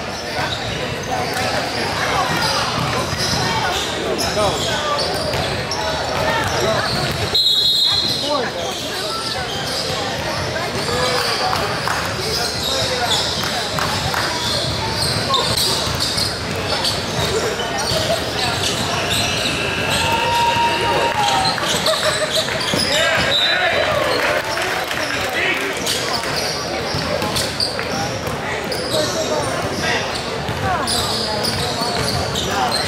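Basketball game in a large gym: a ball bouncing on the hardwood court, sneakers and chatter from players and spectators echoing throughout. A short, high whistle blast, likely from a referee, sounds about seven seconds in.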